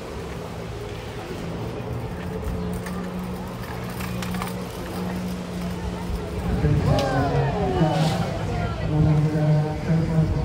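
Engine of the jet ski powering a water-jet flyboard, a steady drone that grows louder about two-thirds of the way through as the rider's jet builds, with voices over it.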